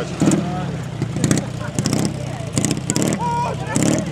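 Dnepr sidecar motorcycle's flat-twin engine running steadily as the bike pulls away across loose dirt, with voices of onlookers close by.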